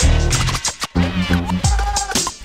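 Hip hop beat with a DJ scratching a record on a turntable: short cut-up sounds sliding rapidly up and down in pitch over a heavy kick drum.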